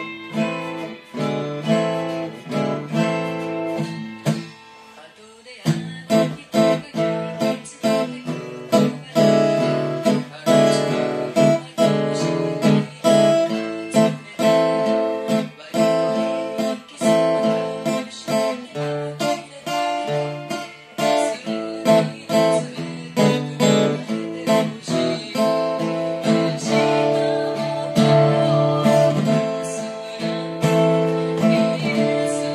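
Solo f-hole acoustic guitar played with the fingers, mixing picked notes and rhythmic strummed chords. The playing thins to a single ringing chord about four seconds in, then picks up again with crisp, evenly paced chord strokes.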